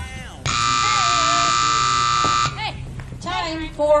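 Arena timer buzzer sounding once, a loud steady electronic tone lasting about two seconds, marking the end of a sorting run. An announcer's voice follows near the end.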